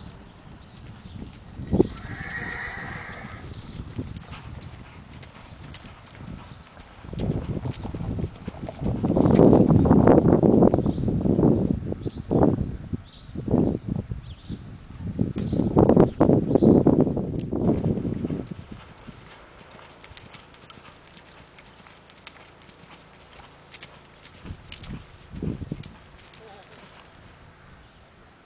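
A horse walks with hoofbeats on dirt. A horse gives a short whinny about two seconds in. Loud muffled rumbling noise runs from about seven to eighteen seconds in.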